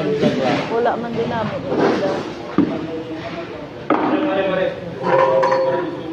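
People's voices talking. About four seconds in comes one long held voiced sound, lasting close to two seconds.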